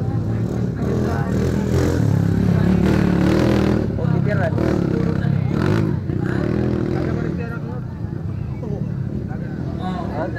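Motocross dirt bike engines running on the track, loudest around two to four seconds in, with voices in the background.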